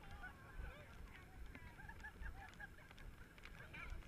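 A flock of birds calling: many short, arching calls overlapping one another, faint, over a low rumble.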